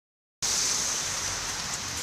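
Steady hissing city street noise, with traffic and tyres on a slushy road, cutting in abruptly about half a second in.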